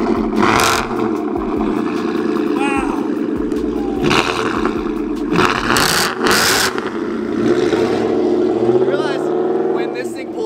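Whipple-supercharged Gen 3 Coyote V8 pickup running at the exhaust, with sharp rev blips about half a second in, around four seconds in and again around six seconds in.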